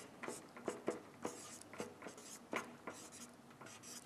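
Marker pen writing on a white board: a series of short, faintly squeaky strokes as figures are written out.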